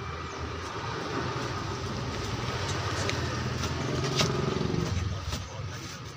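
A motor vehicle's engine passing by, growing louder to a peak about four seconds in and then fading away. A few light clicks sound over it.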